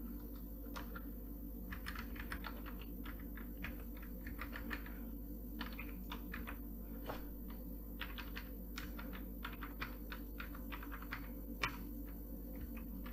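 Computer keyboard typing in short runs of key clicks with pauses between them, with one louder click near the end, over a steady low hum.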